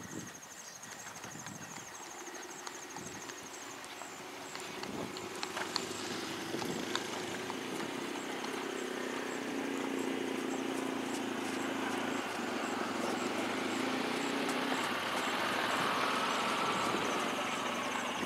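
A distant engine drone, growing gradually louder over a steady outdoor hiss.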